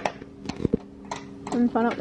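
A few light clicks and taps from hands working at a roof-mounted metal storage box, then a person's voice starting near the end.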